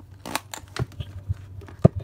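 Hands handling a clear plastic zippered cash pouch and banknotes in a ring binder: a few short plastic crinkles and clicks, with a sharper knock shortly before the end.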